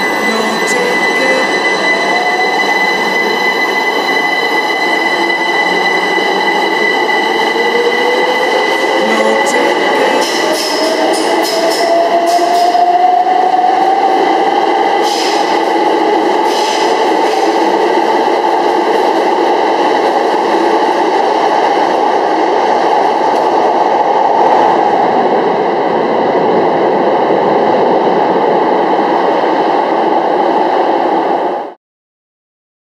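Electric train running with a loud, steady rumble and several fixed high tones. Its motor whine rises in pitch over the first half as the train picks up speed.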